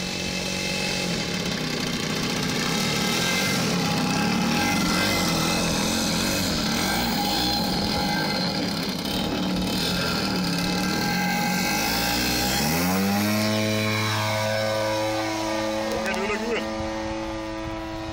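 Single-cylinder gasoline two-stroke engine (a DLE-55) of a large RC model plane running at high throttle through the takeoff run and climb-out. About two-thirds of the way through, its note rises sharply and then holds as a steady, clear tone.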